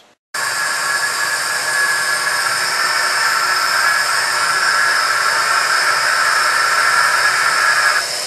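Compressed air rushing into a hyperbaric recompression chamber as it is pressurized toward 60 feet: a steady hiss that starts suddenly just after the beginning.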